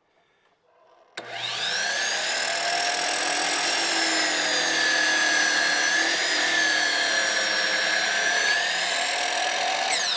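DeWalt sliding mitre saw switched on about a second in, its motor whining steadily as the blade is brought down through a wooden newel post, the whine dipping slightly mid-cut. Right at the end the trigger is released and the pitch starts to fall as the blade winds down.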